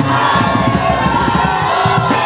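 A congregation worshipping aloud: many voices calling out and singing praise at once, over church music.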